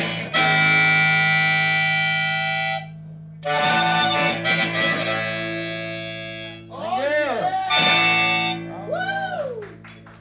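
Live blues with a harmonica played over electric guitar: two long held reedy chords, then wavering notes bent up and down near the end.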